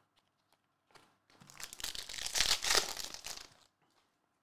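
Foil trading-card pack wrapper crinkling as it is torn open, a crackly rustle lasting about two seconds that starts just over a second in.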